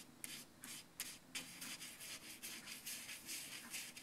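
Round fibre-bristle paintbrush brushing wet watercolour onto sketch paper: a quick, uneven run of short, faint scratchy strokes, several a second.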